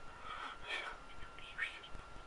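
A man whispering quietly under his breath in prayer: a few short, breathy phrases with no voice behind them.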